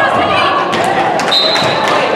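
Volleyball game in a large gym: many players' voices and calls overlapping and echoing, with short thuds of the ball being hit. A brief steady high-pitched note sounds over it from about two-thirds of the way in.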